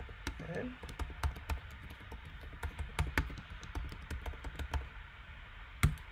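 Typing on a computer keyboard: a quick, irregular run of key clicks, with one louder keystroke near the end.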